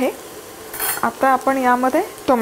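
Spatula stirring and scraping onions frying in oil in a pan, with a short scrape about a second in over a faint sizzle.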